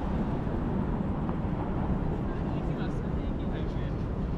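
City street ambience: a steady low rumble of traffic, with faint voices of passersby.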